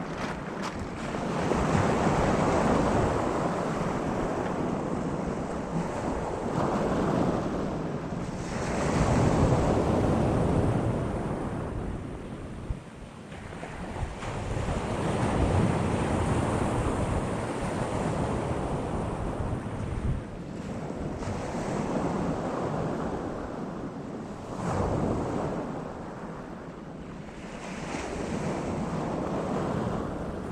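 Waves breaking on a pebble beach and washing back over the stones, swelling and fading every several seconds, with wind buffeting the microphone.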